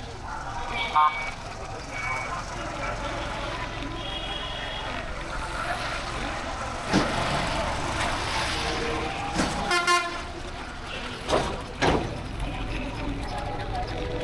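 Street traffic heard from a moving motorcycle: vehicle horns beep several times, short toots in the first few seconds and a louder blast about ten seconds in, over a steady low rumble of the ride. A few sharp knocks come in the second half.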